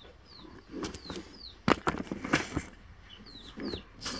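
Baby chicks peeping: short, high chirps that fall in pitch, coming every so often. A couple of sharp knocks about halfway through are the loudest sounds.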